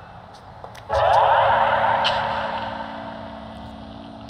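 A car driving past: a rush of road noise that comes in suddenly about a second in and fades away over the next few seconds, with a low steady hum underneath.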